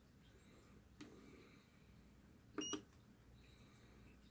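Near silence: room tone, with a faint click about a second in and a brief high beep-like chirp about two and a half seconds in.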